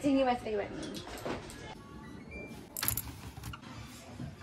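A woman's brief laugh or vocal sound, followed by quieter household handling noise with a few short clicks.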